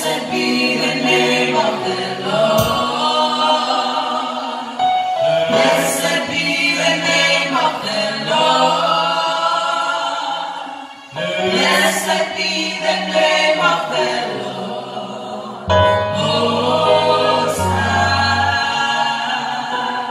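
A small gospel vocal group singing a song together through microphones. Low bass notes join the singing about four seconds before the end.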